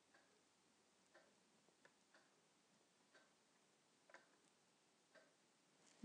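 Near silence: room tone with faint, evenly spaced ticks about once a second.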